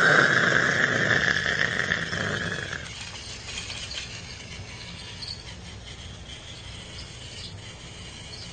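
A train's brakes squealing in a long screech that fades away over about three seconds, followed by faint steady background noise.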